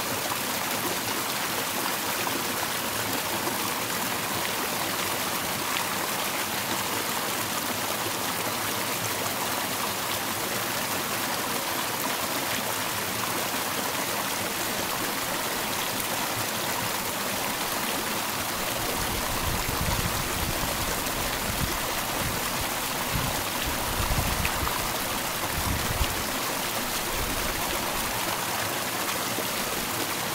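A rushing stream flowing over rocks, a steady, even hiss of water. A few low rumbles hit the microphone about two-thirds of the way through.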